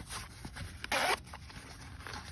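Zipper on a fabric Olight pouch pulled open in one quick stroke about a second in, with faint handling of the fabric around it.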